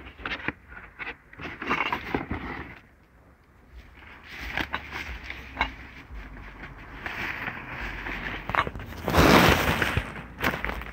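Plastic trash bags rustling and crinkling as hands dig through and pull at them, with scattered small knocks and scrapes. The loudest, closest rustle comes near the end.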